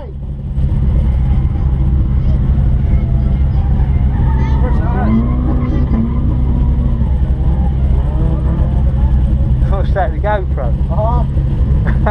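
Nissan S15 Silvia drift car's engine idling steadily, heard from inside the cabin.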